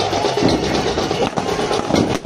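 Loud, continuous din of fireworks going off, with music from loudspeakers underneath.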